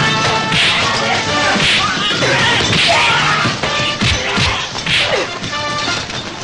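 Film fight-scene sound effects: repeated crashes of smashing tables and tableware and punch impacts, about one a second, over a music score.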